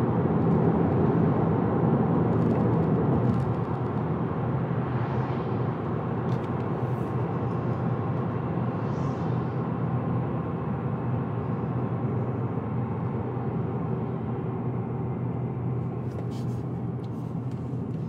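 Cabin noise of a 2024 Subaru Impreza RS on the move: a steady drone of tyres and road with the engine underneath. It eases a little about three and a half seconds in.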